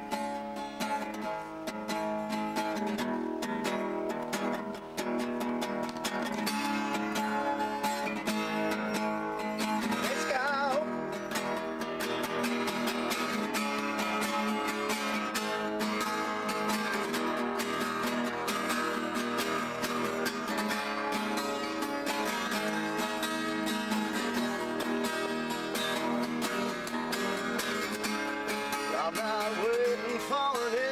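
Two acoustic guitars strumming together, playing a steady instrumental intro to a song.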